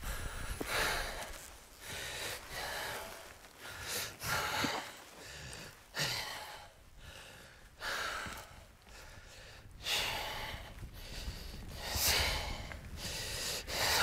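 A person breathing hard and loudly from exertion, about ten heavy breaths spaced a second or two apart, while hurrying down a steep, rocky mountain slope.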